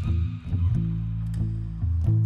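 Instrumental music: deep plucked bass notes with guitar, each note starting with a sharp pluck.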